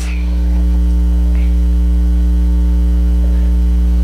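Steady electrical mains hum, a low drone with a buzzy stack of overtones, swelling a little over the first second and then holding level.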